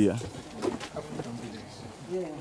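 A dove cooing faintly in short, low notes, right after a man's voice trails off.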